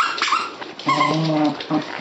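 West Highland White Terrier puppy whimpering: a short high whine at the start, then a longer, steady, lower whine about a second in. The puppy is protesting at the hood of the sweater it is wearing.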